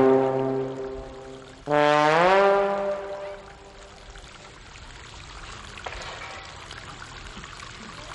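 Brass music sting: a held brass note ends shortly after the start, then a second note slides up in pitch and is held for about a second and a half before fading.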